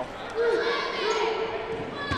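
Dodgeballs bouncing on a hardwood gym floor, with players' voices calling out in a large, echoing gymnasium.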